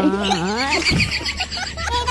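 A horse-like whinny: a loud, fast trilling call lasting about a second, right after a short spoken word.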